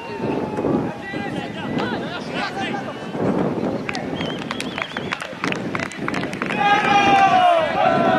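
Several players shouting and calling out to one another, with a cluster of sharp clicks in the middle and loud, drawn-out shouts near the end.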